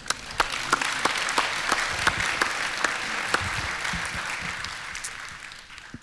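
A church congregation applauding, a dense patter of many hands clapping that tapers off near the end.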